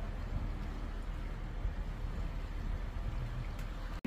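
A steady low rumble of outdoor background noise, with no distinct events standing out.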